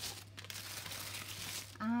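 Tissue wrapping paper rustling and crinkling as it is folded back from the contents of a box, loudest in the first half second.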